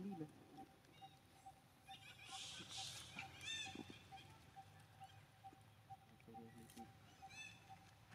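Faint, short high-pitched animal squeaks, one about three and a half seconds in and another near the end, over a quiet background with a faint pulsing tone.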